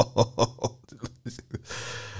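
A man laughing in a quick run of short bursts that dies away about halfway through, leaving only faint sounds.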